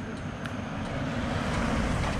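A motor vehicle running along the road: a steady low engine rumble with road noise, getting a little louder toward the end.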